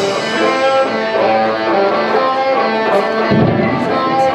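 Live rock band playing with electric guitars ringing out in held notes and little drumming; a heavier low end comes back in a little over three seconds in.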